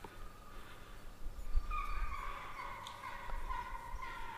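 Deer hounds baying, starting a little under two seconds in as a run of long, drawn-out bawls that step down in pitch. A low rumble on the microphone runs underneath.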